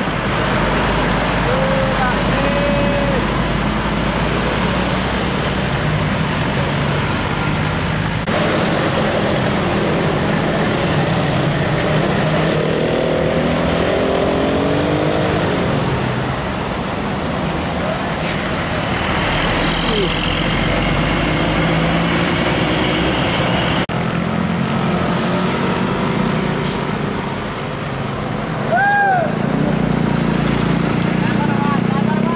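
Diesel engines of large intercity coaches pulling around a tight uphill hairpin bend. The engine note is heard in several separate passes, one bus after another.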